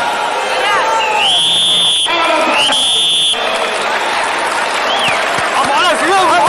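Two long whistles, each sliding up in pitch and then held steady, the second starting about half a second after the first ends. They sound over arena crowd noise and voices.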